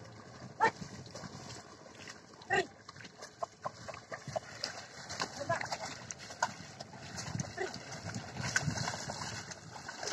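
A ploughman's short wordless calls to a pair of bullocks dragging a leveller through flooded paddy mud, a few brief calls a couple of seconds apart, over the wet sloshing of hooves and board in the mud.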